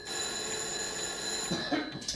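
A telephone ringing: one long ring that stops about one and a half seconds in.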